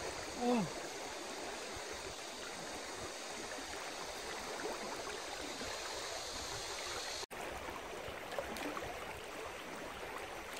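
Shallow river water flowing steadily in a constant rush, with a split-second dropout a little after seven seconds in.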